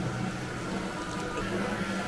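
Busy fast-food restaurant ambience: indistinct background chatter over a steady low hum, likely from the kitchen extraction and equipment.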